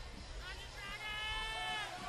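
A person's voice shouting out in one held, slightly wavering call of about a second, starting about half a second in, over faint crowd noise.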